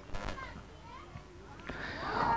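Faint, distant shouts and chatter of players and onlookers on an open-air cricket ground, with a light knock or two.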